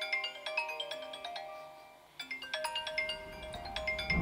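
Smartphone alarm ringing: a melody of high chiming notes that dies away and starts over about two seconds in.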